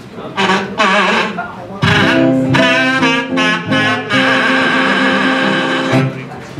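Kazoo buzzing a few short wavering notes, then a strummed acoustic guitar chord about two seconds in under a long held kazoo note.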